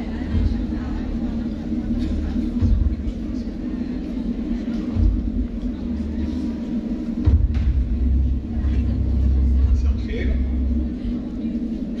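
A handheld microphone being handled, giving irregular low rumbles and bumps that come and go several times, longest in the second half, over a steady low hum from the PA, with faint voices away from the mic.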